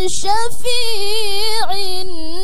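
A young woman's voice reciting the Qur'an into a microphone in the melodic tilawah style, holding long notes with a wavering ornament. A short hiss comes at the start and a brief dip in pitch near the end.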